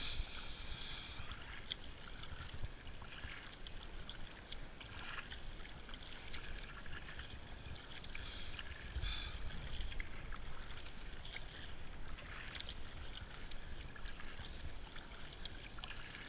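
Kayak paddle blades dipping into and pulling through the water with each stroke, giving repeated splashes and swishes over the hiss of the moving racing kayak.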